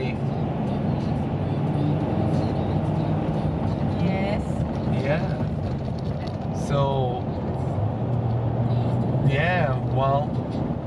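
Steady road and engine noise of a moving pickup truck heard inside its cab, a constant low drone. Brief voice sounds break in a few times.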